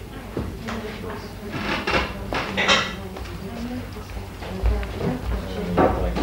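Indistinct voices in a hall with scattered knocks and clatters, and a couple of low thuds near the end.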